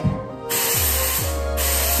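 Body spray hissing from a spray can in two long bursts: the first starts about half a second in and lasts about a second, and the second follows after a brief pause.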